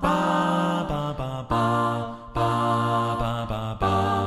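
An a cappella vocal group singing held chords in short phrases, a new chord about every second and a half, over a steady low bass note.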